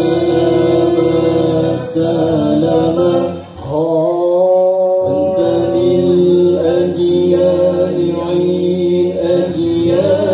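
An Al-Banjari sholawat group chanting together in long, held notes, the pitch shifting from phrase to phrase, with a short break in the singing about three and a half seconds in.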